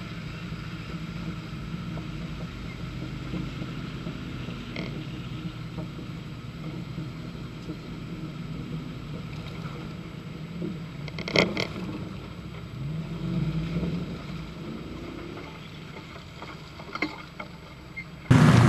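Mercedes-Benz 230GE G-Wagen four-cylinder petrol engine running at low revs while crawling off-road over rough ground. There is a sharp knock about eleven seconds in, and the revs rise briefly a couple of seconds later.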